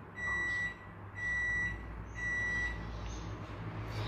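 Electronic beeper sounding three half-second beeps at one steady pitch, about one a second, stopping about three seconds in.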